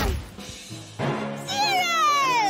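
Cartoon cannon shot at the very start, its boom fading over about half a second, then background music and, about a second and a half in, a long tone sliding steadily down in pitch.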